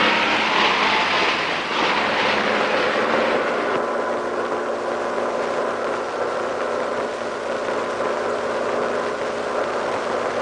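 Car engine running steadily while the car is driven. A louder, hissing rush fills the first few seconds, then settles about four seconds in into an even engine drone.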